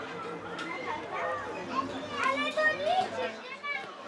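Several voices shouting and chattering, some high-pitched, with a burst of louder calls a little after two seconds in.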